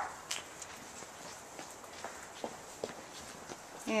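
A person's footsteps while walking: a few soft, uneven steps.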